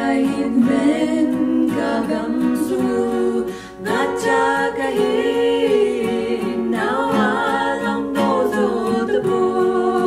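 Two women singing a Kuki-language song together, with an acoustic guitar strummed softly underneath; the voices break briefly for a breath a little after three seconds in.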